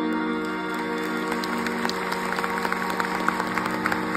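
Audience applause starts about a second in and grows denser, over a steady tanpura drone still sounding with no singing.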